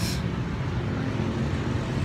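Steady road traffic noise on a busy city street: the low, even rumble of vehicle engines and tyres going by.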